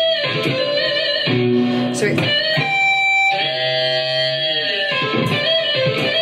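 Yamaha electric guitar playing a blues-style A minor pentatonic lick of picked notes and string bends up to the G. A long held note past the middle sinks in pitch at its end as the bend is let down.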